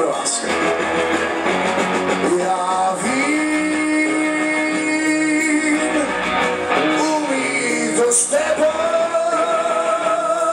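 Live rock band playing: electric guitar and drums under a singer who holds two long notes, one from about three seconds in and another from about eight seconds in.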